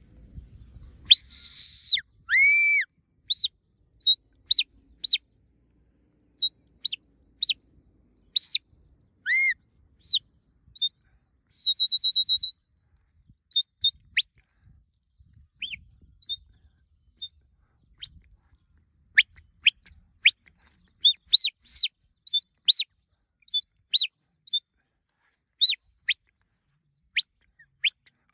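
Sheepdog handler's whistle commands: a series of high, clear whistle blasts. A few longer held and arched notes come first, then short pips and quick up-and-down flicks, a fast warbling trill about twelve seconds in, and a dense run of short blasts near the end.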